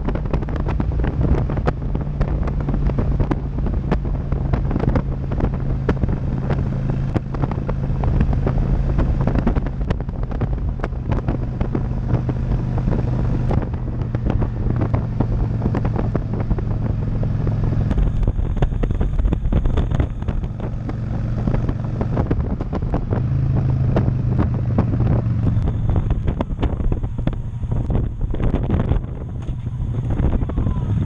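Motorcycle engine running at highway speed, a steady low hum under heavy wind buffeting on the microphone. In the second half the engine note steps down as the bike slows onto an exit ramp.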